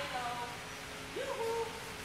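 A husky-type dog howling in two short calls, the second sliding up and then holding its pitch.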